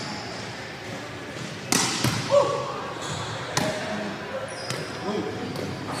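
Two sharp volleyball impacts, about two seconds apart, each echoing in a large gym hall.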